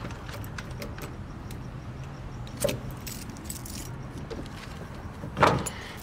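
A wooden double door being shut up, with metal jangling like keys: a sharp click about two and a half seconds in and a louder rattle near the end, over a low steady hum.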